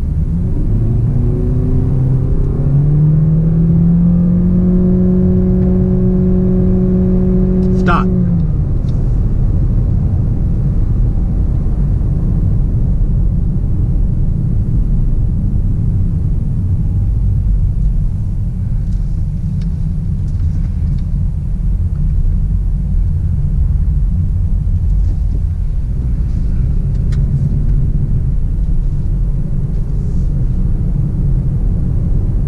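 Honda Clarity accelerating hard from a standstill on electric power alone in Sport mode, heard from the cabin. A low electric-drive whine rises in pitch and then holds for about the first eight seconds, then gives way to steady tyre and wind noise at speed.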